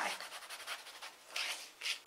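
Bone folder rubbing across patterned cardstock: a dry, papery scraping that grows louder for a moment near the end.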